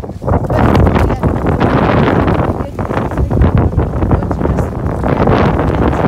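Strong wind buffeting the phone's microphone, a loud rushing rumble that eases briefly partway through and then picks up again.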